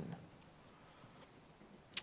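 Near silence: room tone in a pause in a man's speech, his voice trailing off at the start and a brief sharp click just before he speaks again.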